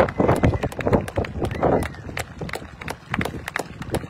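Scattered clapping from an outdoor crowd: irregular sharp claps, several a second, with a few voices calling out in the first half.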